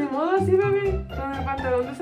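Background music with a low bass line, and a voice over it, drawn out and sliding in pitch.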